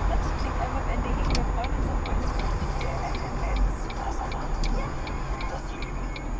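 Low rumble of a car driving, heard from inside the cabin, with the turn-signal indicator ticking steadily from about two seconds in as the car signals a turn.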